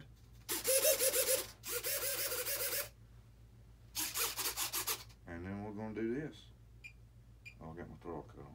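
Hobby servos in a Freewing F-35 foam jet running in three raspy, buzzing bursts of about a second each as the transmitter sticks are moved. The control rods are disconnected, so the servos run unloaded while being centred.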